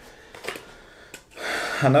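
A few faint clicks from a small cardboard camera-accessory box being handled, then a man's voice starts near the end.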